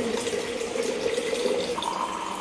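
Water running slowly from a water purifier's tap into a steel bottle: a steady hiss over a steady low hum, with a higher steady tone coming in near the end.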